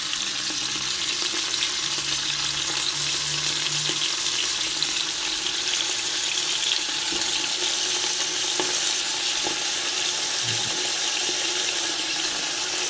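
Onion rings frying in oil in the bottom of an Afghan kazan, a steady sizzle throughout.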